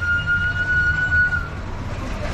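A steady high-pitched tone, the kind of signal a siren or alarm gives, held at one pitch over the low rumble of street traffic, stopping about three quarters of the way through.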